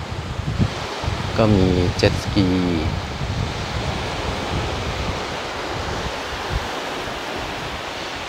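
Steady rush of sea breeze and gentle surf on a sandy beach, the wind buffeting the microphone.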